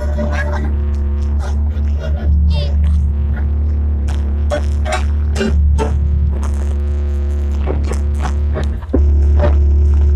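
A horeg sound system of stacked speaker boxes playing loud during a sound check. A heavy, steady low bass dominates, with music and sharp clicking hits above it. The bass dips briefly about nine seconds in.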